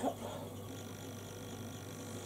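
Quiet room tone: a low steady electrical hum with a thin high whine and faint hiss, and no distinct strokes or other events.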